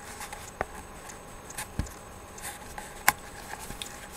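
A few scattered light clicks and taps with faint handling noise, the sharpest click about three seconds in.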